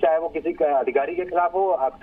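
Speech only: a man talking over a telephone line, his voice cut off above the middle range.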